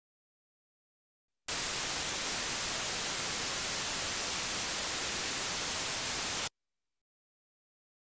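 White noise from random data (/dev/urandom) played as raw audio by a simple ALSA C playback program. It starts about a second and a half in, runs steady for about five seconds and cuts off suddenly.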